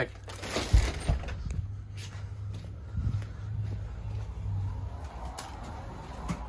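Walking and handling noise as the camera is carried through a doorway: scattered knocks and rustles, the loudest about a second in, over a steady low hum.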